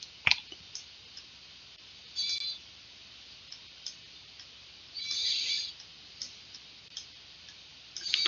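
A computer mouse clicking a few times, the loudest click just after the start, with two brief higher-pitched hissy sounds about two and five seconds in.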